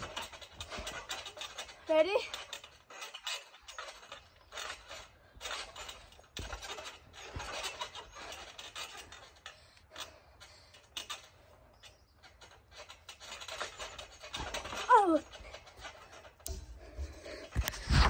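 A girl breathing hard in quick, breathy puffs close to the microphone, out of breath from bouncing on a trampoline, with a brief vocal sound about two seconds in and another near the end.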